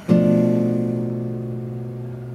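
Acoustic guitar, a classical nylon-string type, strumming once just after the start and left to ring, fading slowly. The chord is the diminished chord on the seventh degree of C major.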